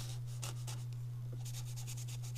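Paintbrush strokes on sketchbook paper: short, soft scratchy brushing near the start and again in the second half, over a steady low hum.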